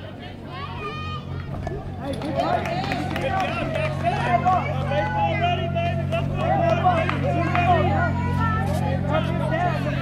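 Spectators' voices at a youth baseball game: many people talking and calling out at once, getting louder about two seconds in, over a steady low hum.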